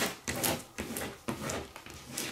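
Plastic vinyl squeegee scraping in a series of short quick strokes over transfer tape laid on a vinyl decal, burnishing the vinyl onto the tape.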